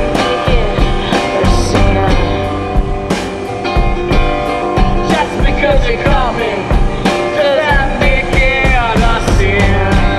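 Blues-rock song in an instrumental passage: notes slide up and down in pitch over a regular drum beat.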